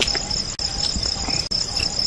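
Crickets chirping, a steady high pulsing trill, with two very brief dropouts, about half a second in and about a second and a half in.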